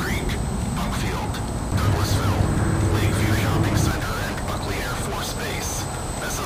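Indistinct voices in outdoor ambience, with a low rumble that swells about two seconds in and drops away near four seconds.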